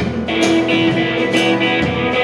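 Live band playing a short instrumental stretch between sung lines, with guitars to the fore over bass and drums and one long held note.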